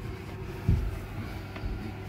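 A steady low mechanical hum, with one short dull thump about two-thirds of a second in.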